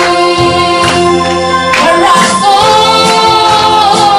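A Mara song playing: singing that holds long, gliding notes over steady sustained backing notes and a regular beat.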